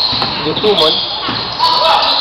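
Basketball bouncing on a hardwood gym court during play, with players' voices calling out over the gym's background noise.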